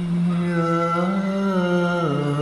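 A singer holds one long sung 'ah' on a steady note over a musical accompaniment; the note lifts slightly in pitch about a second and a half in.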